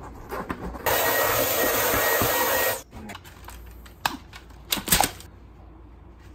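Cordless stick vacuum, a Dyson V10, switched on for about two seconds and then off, giving a loud hiss with a thin high motor whine. This is followed by a few sharp knocks of handling.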